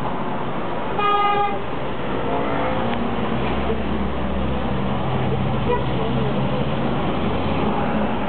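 A car horn toots once, a short half-second blast about a second in, over traffic noise heard from inside a moving taxi. The taxi's engine hum grows louder from about two and a half seconds in.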